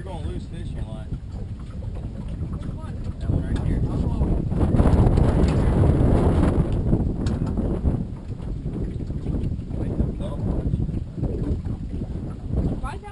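Wind buffeting the microphone in a steady rumble, with a stronger gust swelling and fading in the middle.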